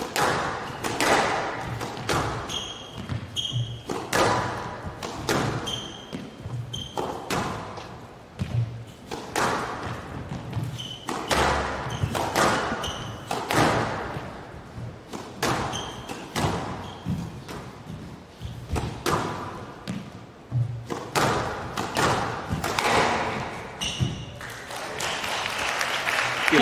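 A squash rally: the ball is struck by rackets and thuds off the walls, a sharp impact roughly once a second, with occasional short high squeaks between the shots.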